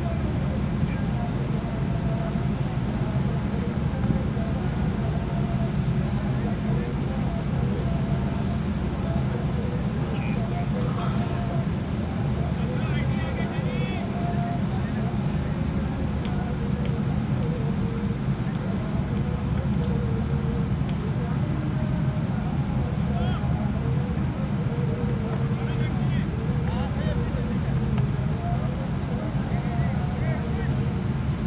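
Steady low rumble of outdoor background noise, with faint, indistinct voices of players calling across a cricket field.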